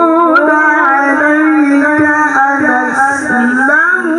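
A male qari's voice through a microphone, reciting in the melodic, ornamented style of Quran recitation: one long held note that wavers in pitch and rises toward the end.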